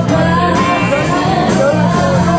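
Live band playing a rock-and-soul groove: drums, bass guitar and electric guitar, with a wavering melody line from voice or saxophone on top.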